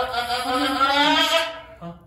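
Saanen doe in labor bleating in one long, wavering cry that breaks off about a second and a half in, as she strains to push out a large kid.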